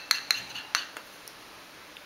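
Baby spoon clinking and scraping against a small bowl while scooping peach purée: three sharp clicks with a brief ring in the first second.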